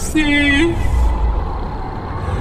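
A voice holds a long, slightly wavering note, broken by a short pause and ending about three-quarters of a second in, over a low steady rumble that carries on after it.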